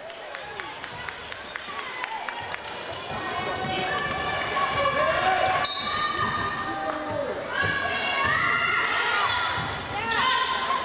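Volleyball game in an echoing gymnasium: a run of sharp knocks and thuds of the ball and play on the hardwood floor in the first few seconds, then overlapping shouts and calls on and around the court.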